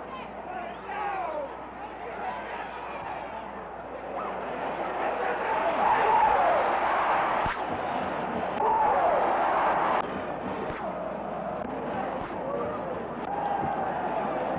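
Stadium crowd noise, a mass of voices with individual shouts standing out, swelling to a louder cheer from about four seconds in and easing off after about ten seconds.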